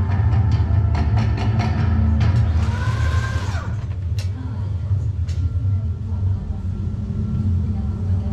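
Steady low rumble of a dark-ride car moving between scenes, under the ride's ambient soundtrack, with scattered clicks and a brief tone that swoops up and then down about three seconds in.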